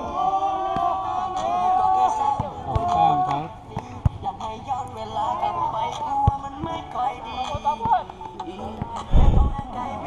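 Outdoor basketball game: voices and music mixed together, with a few sharp knocks typical of a basketball bouncing on the concrete court, and a loud low thump near the end.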